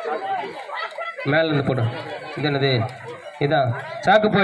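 A man's voice over a microphone and loudspeaker, calling out in three loud, drawn-out phrases starting about a second in, with crowd chatter underneath.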